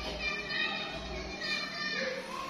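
Children's voices chattering in a classroom.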